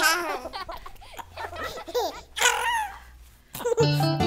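Young children giggling and laughing in short bursts, with music starting just before the end.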